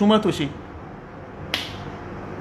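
A man's voice for the first half second. Then, after a pause, a single sharp click about one and a half seconds in.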